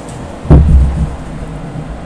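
Steady background noise from a Blue Yeti Nano USB condenser microphone running raw, with no noise reduction or compression, at 0 dB gain. The noise is really loud. About half a second in comes a loud, low rumbling thud lasting about half a second.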